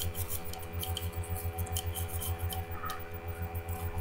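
Bristle brush scrubbing the metal slide of a Walther .22 pistol with light pressure: a run of short scratchy strokes over a steady low hum.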